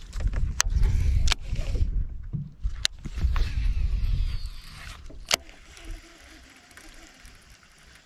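A fishing rod and reel being handled and cast from a boat deck. Low rumbling handling noise and a few sharp clicks come in the first half, then it settles to a quiet, even background.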